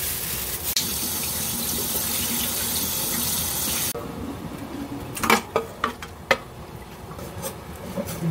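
Kitchen tap running into a stainless-steel sink as pork belly is rinsed under it, shut off abruptly about four seconds in. A few sharp knocks follow.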